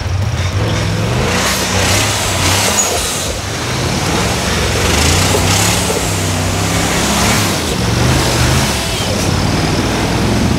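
Rock bouncer race buggy engine revving hard and repeatedly, its pitch climbing and dropping as the throttle is worked, with rushes of hiss over it.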